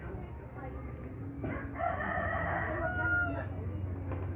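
A single long bird call, about two seconds, starting a second and a half in, held on one pitch and dropping away at the end, over a low steady hum.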